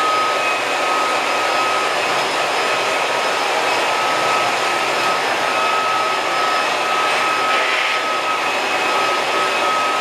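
Several battery-powered Thomas & Friends toy trains running at once on plastic track: a steady whirring of small electric motors and wheels with a thin high whine. A brief scratchy burst about seven seconds in.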